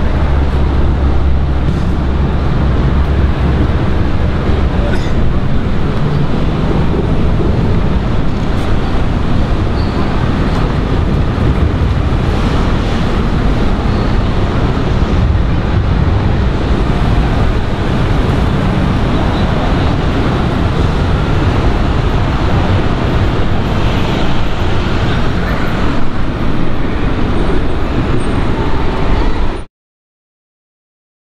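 Steady street traffic noise with indistinct voices mixed in, cutting off abruptly near the end.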